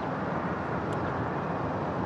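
Steady outdoor background noise: an even low rumble with no distinct events.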